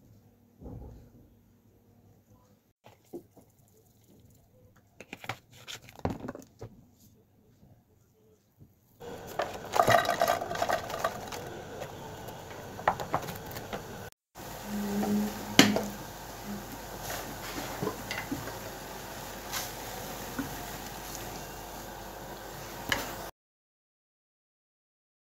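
A few light clicks of wooden chopsticks against a plate. Then, about nine seconds in, diced peppers start sizzling steadily in a non-stick frying pan, with scattered clinks and scrapes of a silicone spatula. The sound cuts off abruptly shortly before the end.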